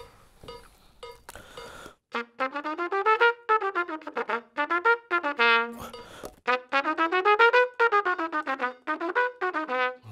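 Metronome clicking at 110 beats per minute. About two seconds in, a trumpet starts playing scales in quick, even runs of notes up and down in time with the clicks.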